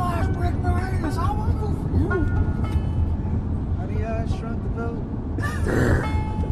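Steady low road and engine rumble inside a moving car's cabin, with a man's voice over it and a few held guitar notes.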